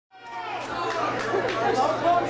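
Several people talking over one another, crowd chatter, over a steady low hum; the sound comes up from silence right at the start.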